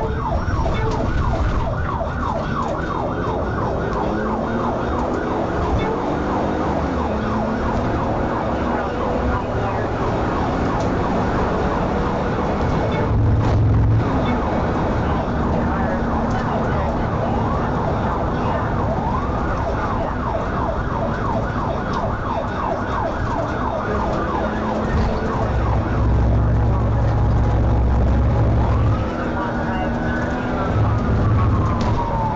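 Police car siren in a fast yelp, about three sweeps a second, that later slows into longer rising-and-falling wails. Underneath it runs the low, steady rumble of the moving patrol car's engine and tyres.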